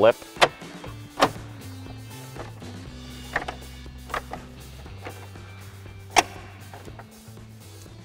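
Plastic dash bezel retainers snapping into place as the panel is pressed home: about five sharp clicks at irregular intervals, the loudest about six seconds in. Soft background music with a slow bass line plays underneath.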